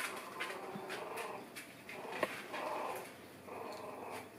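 Three-week-old puppies whimpering with short, high cries, mixed with a few light clicks, the sharpest about two seconds in.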